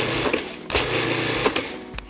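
Food processor pulsed twice, its motor running for about a second each time as it churns graham cracker crumbs with melted butter.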